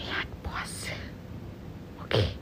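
A woman whispering a few short breathy words through cupped hands, all in the first second.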